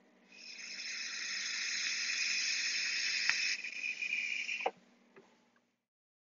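A long draw on a vape mod: a steady hiss of e-liquid vaporizing on the atomizer coil as air is pulled through, lasting about four seconds and ending with a click.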